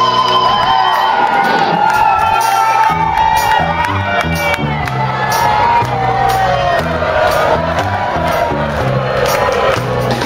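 Live rock band playing over a cheering crowd; the bass line comes in about three seconds in.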